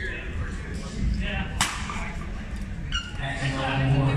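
A single sharp crack of a badminton racket striking a shuttlecock, about one and a half seconds in.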